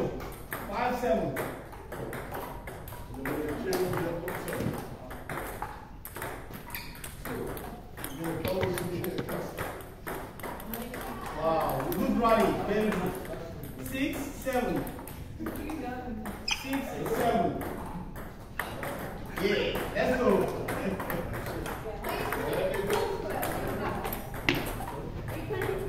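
Table tennis balls being struck by bats and bouncing on the tables, many sharp clicks at irregular intervals from several tables at once.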